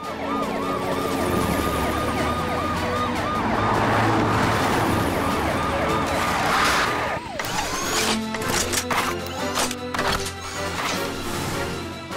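Emergency-vehicle siren warbling rapidly over background music, then a run of short knocks and clatters over the music from about seven seconds in.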